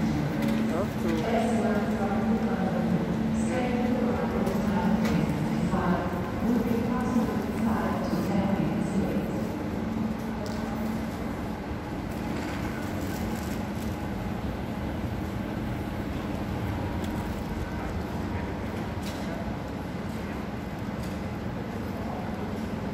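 Train station concourse ambience: indistinct voices over a steady low hum for about the first half, then an even background din of the hall.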